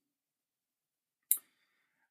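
A single short click a little past halfway through, otherwise dead silence.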